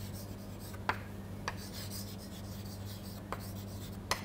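Chalk writing on a chalkboard: soft scratching strokes with a few sharp taps as the chalk strikes the board, over a steady low hum.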